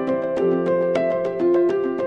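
Instrumental background music: sustained melodic notes over a steady, light percussive beat.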